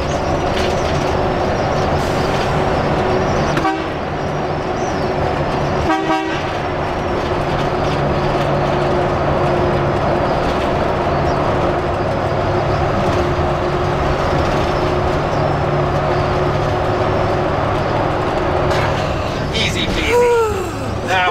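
Converted school bus driving through a road tunnel, heard from inside the cabin: a steady drone of engine and road noise, with a brief horn-like toot about six seconds in.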